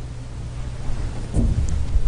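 Low steady rumble and hum, with thumps that get louder about two-thirds of the way in.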